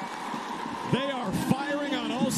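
A man's commentary voice starting about a second in, over steady crowd noise from a stadium.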